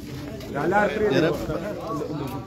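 Voices of a gathered crowd of men, several talking at once; the talk rises about half a second in.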